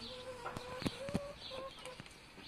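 Domestic chicken giving one long, steady call at a single pitch for about a second, then a short note of the same kind. A few sharp clicks sound during the call.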